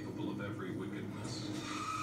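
Soundtrack of a DVD trailer playing on a television, picked up across the room by a phone: brief voices, then a hissing sound with a steady high whine from about a second and a half in.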